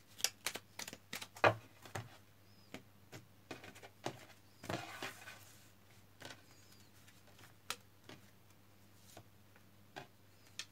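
A tarot deck shuffled in the hands with quick card snaps over the first couple of seconds, then cards laid down one by one on a wooden table with light taps and a short rustling slide.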